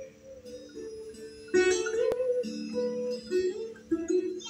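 Sitar played live: plucked melodic notes over a steady drone, growing louder about a second and a half in, with one sharp click near the middle.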